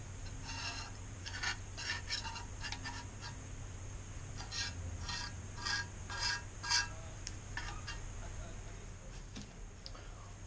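Steel scraper blade scraping stripper-softened paint off a metal brake master cylinder body, in a run of short, irregular strokes about two a second.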